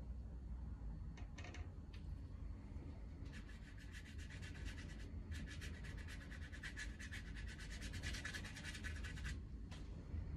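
Large watercolour brush scrubbing dark paint onto watercolour paper in rapid, rhythmic strokes. It comes in two spells, the first starting about three seconds in and the second stopping shortly before the end, with a brief pause between them.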